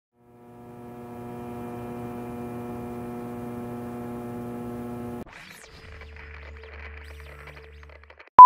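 Steady electrical hum with a buzzy stack of evenly spaced tones for about five seconds. It cuts off suddenly into a noisy sweep, followed by a low steady drone.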